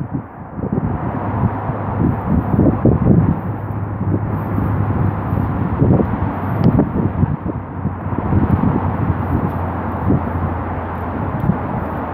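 Wind buffeting the phone's microphone in irregular gusts, over a steady low rumble.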